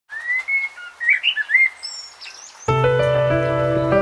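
Birds singing, with short chirps and whistles gliding in pitch. About two and a half seconds in, the song's keyboard intro starts suddenly with sustained chords over a low bass.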